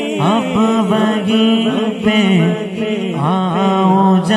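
Male voice singing a naat, an Urdu devotional poem, into a handheld microphone, drawing out long held notes with wavering ornaments on the vowels.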